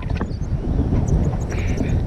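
Wind buffeting the microphone of a camera held out on a selfie stick during a tandem paraglider flight: a steady, low rumble of rushing air.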